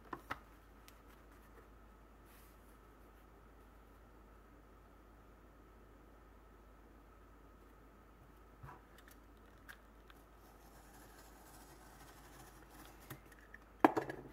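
Mostly quiet room tone, then a utility knife drawn along a steel square through stiff waxed cotton duck canvas: a faint scraping cut in the last few seconds. Two sharp clicks at the start and a louder click just before the end.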